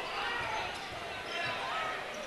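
A basketball being dribbled on a hardwood gym floor, under the chatter of spectators' voices in the gym.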